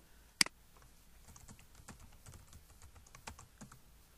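Computer keyboard typing: one sharp, louder click about half a second in, then a run of soft, irregular key clicks as a password is typed.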